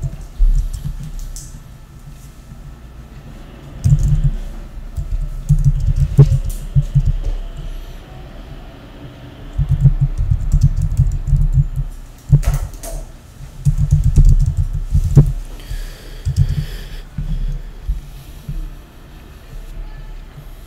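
Typing on a computer keyboard: several bursts of rapid keystrokes with short pauses between them.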